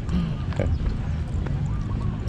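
Footsteps on pavement while walking, over a steady low rumble on the microphone, with faint voices.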